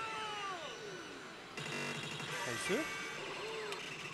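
Oshu! Banchou 4 pachislot machine's game audio during an effect: a long falling swoop, then a sudden bright effect sound about a second and a half in, followed by short voice-like calls, over the steady din of the parlour.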